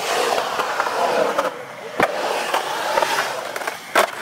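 Skateboard wheels rolling over the concrete of a skate bowl, a steady rolling rumble, with a sharp clack about halfway through and a louder clack near the end.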